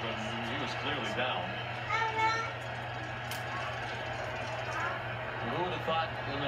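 Television sports broadcast heard through the TV's speaker: brief fragments of voices over a steady background noise and a low constant hum.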